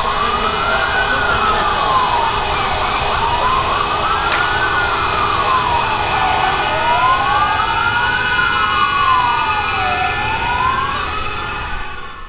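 Several city air-raid sirens wailing together, each rising and falling slowly in pitch over about seven seconds, out of step with one another. They are sounding the W-Hour commemoration of the Warsaw Uprising. The sound fades out at the very end.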